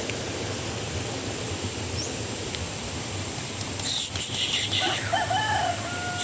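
A rooster crows about five seconds in, one drawn-out call that rises and then holds. It sounds over a steady high-pitched insect buzz, with pulsing high chirps from about four seconds in.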